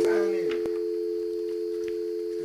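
Steady telephone dial tone, the two-note North American kind, with a man's voice trailing off at the very start.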